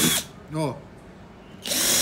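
Cordless drill with a thin bit boring small holes through marine plywood: its motor whine stops a moment in as one hole goes through, and starts again near the end for the next hole.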